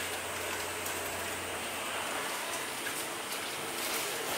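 Steady, even background hiss with a few faint ticks; no distinct chopping or knocking.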